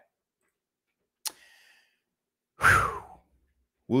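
A single sharp click about a second in, then a man's loud, heavy sigh near the end as he breathes out to calm himself.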